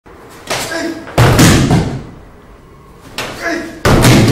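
Two throws in a paired martial-arts kata: each time a short shout, then a loud slam as a thrown body hits the dojo mat in a break-fall. The first slam comes a little after a second in, the second near the end.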